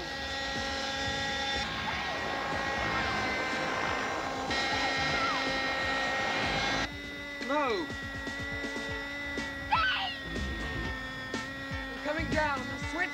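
Small engine of a radio-controlled model helicopter buzzing overhead as it dives at people, over a sustained synth music score. The engine noise cuts off suddenly about seven seconds in, leaving the music.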